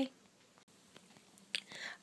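Mostly near silence: quiet room tone after a woman's last word. Near the end there is a short, breathy, whisper-like sound just before she starts talking again.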